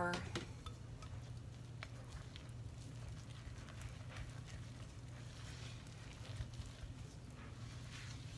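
Faint scraping and light ticks of a utensil stirring oat flour into stiff dough in a ceramic mixing bowl, over a low steady hum.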